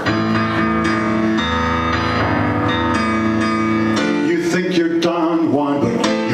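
Roland keyboard playing held chords for about four seconds, then a quicker plucked, guitar-like figure near the end.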